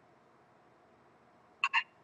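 A pause in speech heard over a Skype call line: near silence with faint steady hiss, then two short vocal sounds near the end as the speaker starts to talk again.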